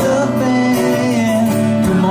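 Two acoustic guitars playing a song live on stage, with held notes ringing over steady strumming.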